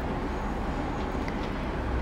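Steady background noise, a low rumble under an even hiss, with no speech.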